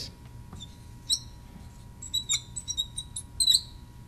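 Marker squeaking on a glass lightboard as it writes. There is one short high squeak about a second in, then a run of squeaks over the next second and a half.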